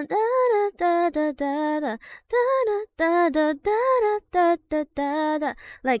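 A young woman singing a short melody unaccompanied on wordless syllables: about a dozen short notes in a bouncy rhythm, voicing how she expected a song's part to go.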